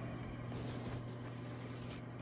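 Quiet room tone: a steady low hum with faint background hiss.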